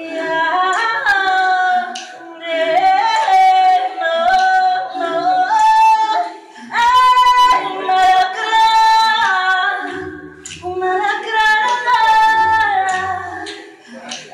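Women's voices singing an improvised song a cappella: a lead voice on a handheld mic over a live-looped vocal accompaniment. Short sharp clicks recur throughout, and a low sustained note joins in the last few seconds.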